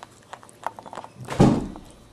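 Maltese mother dog licking her newborn puppy: a run of small wet clicks and smacks, then a short, louder huff or thump about a second and a half in.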